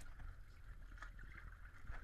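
Faint water lapping and splashing against a boat's hull and dive platform, with scattered light knocks over a low rumble.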